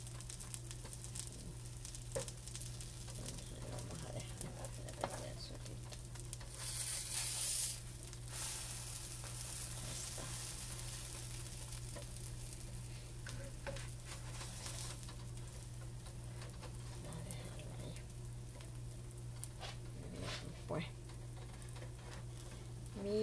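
Pancake batter sizzling in a hot nonstick frying pan, with a louder burst of sizzling about seven seconds in as a pancake is flipped onto its raw side. A few light spatula taps near the end.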